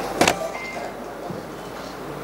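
Sheets of paper handled close to a tabletop microphone: a short, sharp rustle about a quarter of a second in, then only faint background noise.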